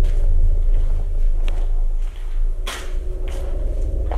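Footsteps on a debris-strewn floor over a steady low rumble, with a few short crunches; the sharpest comes a little under three seconds in.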